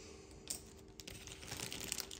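Light clicks and taps of small resin-printed model parts being handled on a workbench. There is a sharp click about half a second in, another at about one second, and a few fainter ones near the end.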